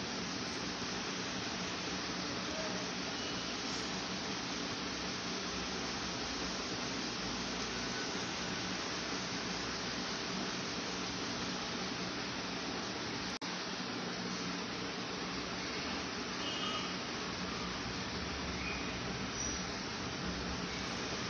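Steady background hiss with no speech, interrupted by a brief dropout and click about two-thirds of the way through.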